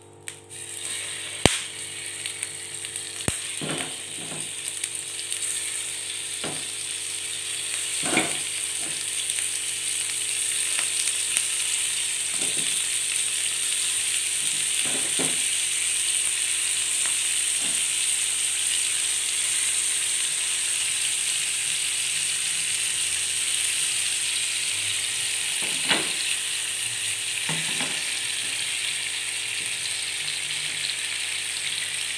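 Squid pieces sizzling in hot oil in a non-stick frying pan. The sizzle grows louder over the first several seconds as more pieces go in, then holds steady, with a few sharp clicks and scattered knocks against the pan.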